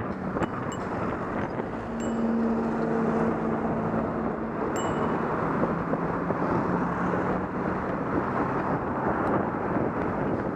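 Road traffic heard from a bicycle in a cycle lane, with wind rushing on the microphone: a steady car-engine hum that grows louder about two seconds in, and a few faint sharp ticks.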